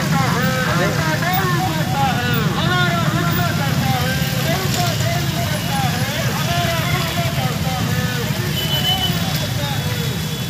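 Many motorcycles riding together in a procession, their engines making a steady, dense drone, with many overlapping voices shouting over them.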